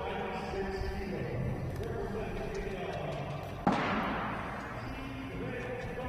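Indistinct voices in a large competition hall, with a single heavy thud a little past halfway that rings on briefly in the room.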